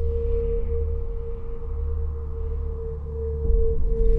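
Trailer score drone: a single steady held tone over a deep bass rumble, swelling with a heavier low hit about three and a half seconds in.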